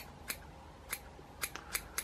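Scissors snipping bucktail hair on a fly-tying hook: a handful of short, crisp snips about half a second apart, trimming the bucktail wing shorter.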